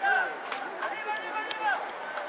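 Several voices shouting and calling at once on a rugby pitch during play at a ruck, with a sharp knock about one and a half seconds in.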